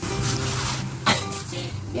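A woman blowing out a long breath through pursed lips over background music, followed by a short sharp click about a second in.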